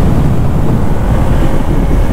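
Heavy wind buffeting on the microphone of a motorcycle rider's helmet camera at riding speed: a loud, ragged low rumble, with the motorcycle's running and road noise underneath.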